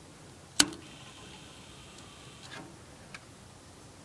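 A single sharp metal clank on a small wood stove about half a second in, with a faint ringing after it, then a softer knock and a light tick.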